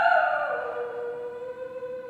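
Operatic soprano voice sliding down from a loud high note to a lower note about half a second in, then holding it softly as it fades.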